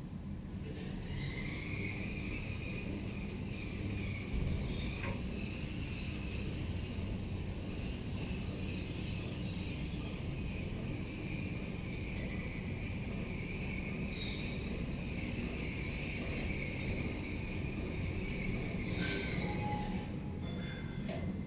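A Kone-modernised EPL traction elevator car riding up several floors, heard from inside the cab: a steady low rumble of travel with a high whine that comes in rising about a second in as the car gets under way, holds steady, and stops near the end as the car slows and levels, with a few light clicks at the stop.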